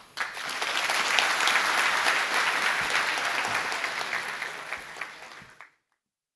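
Audience applauding at the end of a conference talk: many hands clapping at once, swelling in the first second or so, then slowly thinning out before cutting off abruptly near the end.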